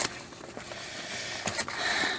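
Cardboard and plastic packaging of a trading-card theme deck being handled and pried open: faint rustling and scraping, with a sharp click at the start and another about a second and a half in.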